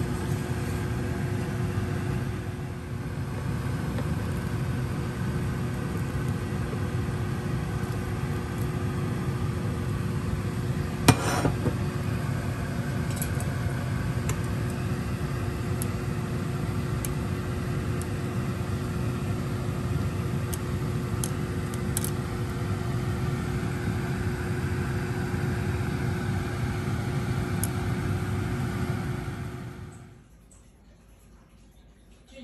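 Steady low motor hum carrying one constant pitched tone, such as a kitchen exhaust fan running over the stove. A single sharp knock comes about eleven seconds in, with a few light clicks later.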